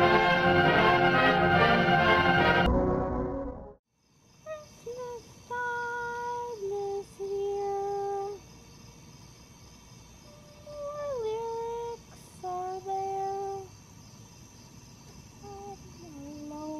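Orchestral music that stops about three seconds in, then a short silence, then a high voice singing a slow, wordless tune of held notes, one note sliding down partway through.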